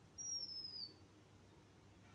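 A bird's single thin, high whistle that slides slightly down in pitch and lasts under a second, heard faintly.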